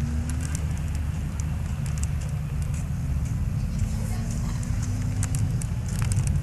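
Steady low rumble of outdoor sound on an old camcorder recording, with frequent faint crackles over it. A faint hum rises slowly in pitch through the middle.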